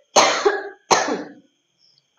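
A woman coughing twice, the second cough a little under a second after the first.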